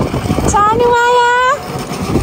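One long, clear sung note that rises slightly, held for about a second starting about half a second in, over low shuffling noise.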